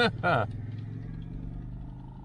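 Land Rover Discovery 4 engine idling, a steady low hum heard from inside the cabin, slowly fading over the two seconds, with a brief spoken word at the start.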